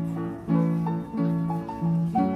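Antique player piano playing a tune by itself, its bass notes and chords struck in a steady rhythm about twice a second.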